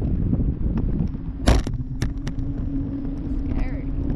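Wind buffeting the microphone of a parasail-mounted camera as a low rumble, with a steady hum from about a second in. Sharp clicks and one loud knock about a second and a half in.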